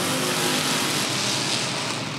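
Several stock-car engines running at racing speed around a short asphalt oval, making a steady, blended drone of the pack.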